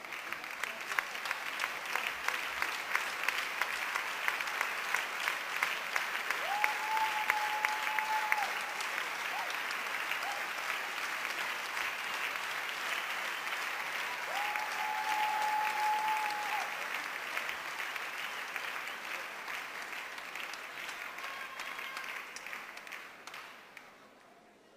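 Large audience in an arena applauding steadily, swelling at first and fading away near the end. A steady held tone sounds twice over the clapping, each lasting about two seconds.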